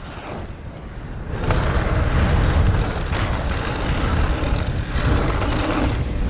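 Wind buffeting an action camera's microphone and mountain bike tyres rolling fast over a hard-packed dirt trail, with a few knocks from bumps. It grows louder about a second and a half in.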